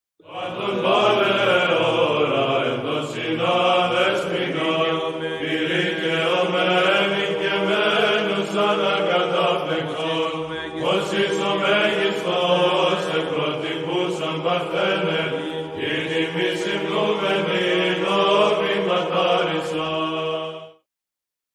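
Orthodox church chant: voices sing a winding melody over a steady, held low drone note.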